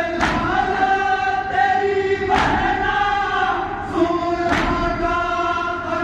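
Group of men chanting a noha, a Shia mourning lament, together in unison. Their hands strike their chests (matam) at the same moment about every two seconds, three beats in all.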